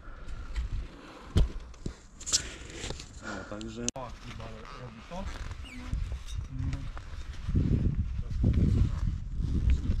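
Indistinct voices in short snatches, with knocks and rumbling from the action camera being moved about; the rumbling grows louder toward the end.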